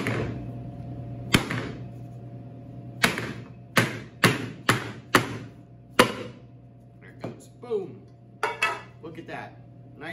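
Round metal cake pan knocked against a wooden butcher-block counter to release a frozen cheesecake: about eight sharp knocks in the first six seconds, then a few softer ones.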